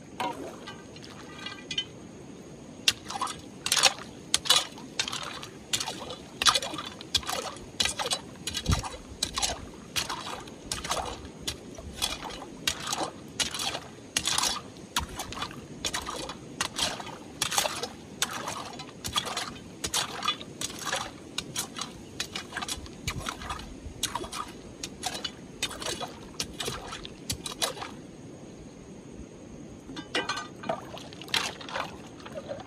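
A long metal digging bar striking and prying among river stones and gravel in shallow water: sharp, irregular clinks and knocks, roughly two a second, from about three seconds in until near the end, over a steady wash of running water.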